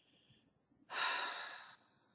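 A woman's breath between sentences: a faint inhale, then an audible exhale lasting under a second that fades away.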